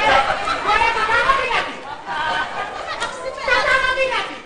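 Speech only: actors talking on stage in a lively exchange.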